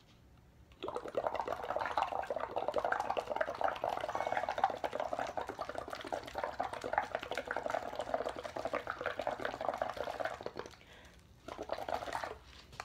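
Breath blown through a drinking straw into a plastic cup of water, bubbling steadily for about ten seconds: it starts about a second in and stops near the end.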